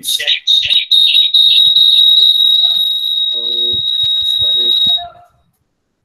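A loud, steady high-pitched whistling tone on one pitch, held for about four seconds and cutting off abruptly, with faint voices underneath.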